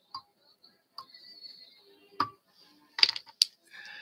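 Small clicks and taps of fly-tying tools at the vise: faint ticks at first, a sharp click a little past halfway, and a quick cluster of louder clicks near the end, as the thread is whip-finished and the tools are handled.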